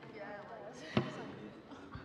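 Indistinct voices of people talking, faint and unintelligible, with a single sharp knock about a second in.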